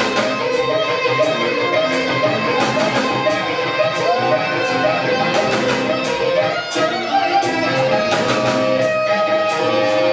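A rock band playing live: an instrumental passage with electric guitar and mandolin carrying melodic lead lines over drums, with regular cymbal hits.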